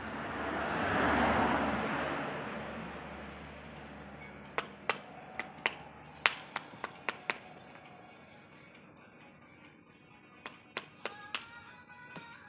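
A broad rushing noise swells and fades over the first few seconds. Then a hand cutting tool snips at the branches of a serut (Streblus asper) bonsai: a quick run of about eight sharp snips, then a few more near the end.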